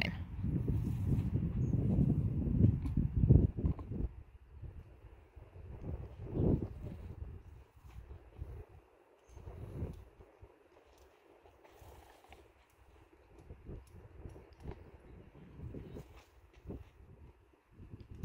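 A low rumbling noise, loudest in the first four seconds, then faint scattered soft thuds and rustles from a horse standing still while it is handled at the bridle.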